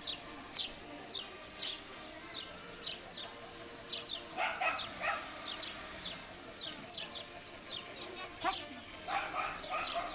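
Small birds chirping repeatedly, short high chirps that slide downward, a couple every second. Two brief louder outbursts rise above them, about halfway through and again near the end.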